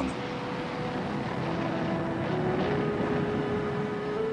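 Jet airliner's engines running at takeoff power as it climbs away, a steady rushing noise.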